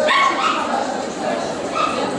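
A dog giving short high-pitched barks, the first and loudest right at the start and a smaller one near the end, over the chatter of a crowded hall.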